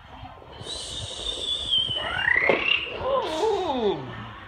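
Playful vocal sound effects, no words: a high squeal sliding slowly down, a quick rising whoop about two seconds in, then a voiced swoop falling steeply in pitch near the end, like a mimicked vehicle.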